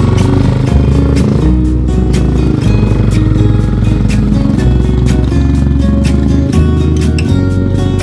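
Background music with a steady beat and a bass line changing every couple of seconds, with a rally motorcycle's engine running beneath it.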